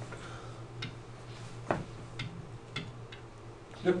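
A few light, sharp clicks and taps, four or five spread irregularly, the strongest about halfway through, over a steady low hum.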